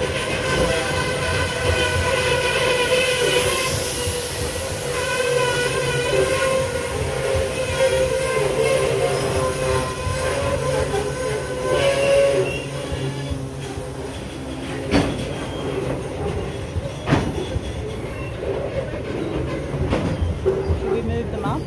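Freight train of covered hopper wagons rolling past close by, with a wavering high-pitched wheel squeal over the rumble through the first half, then two sharp clacks as wheels pass over rail joints.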